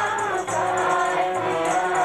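Sikh devotional singing (kirtan): a woman's voice sung over the steady held chords of a harmonium.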